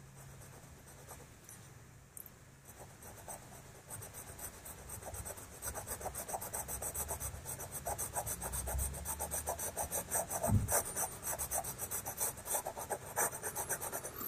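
White pastel pencil scratching on pastel paper in rapid short hatching strokes, several a second: white being worked over the dark pastel to lighten it. It starts faint and grows louder from about three seconds in.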